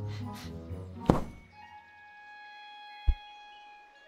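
Animated-film soundtrack: soft orchestral score with held notes, broken by a sharp thud about a second in and a deep thump about three seconds in.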